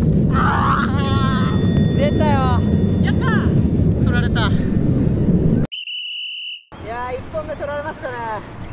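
Wind rumbling on the microphone, with people's voices shouting and reacting over it. About six seconds in, the sound cuts abruptly to an edited-in electronic beep, two steady high tones held for about a second, and then voices resume.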